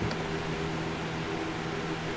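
Steady room tone: an even hiss with a faint low hum, like a fan or air conditioner running in a small room.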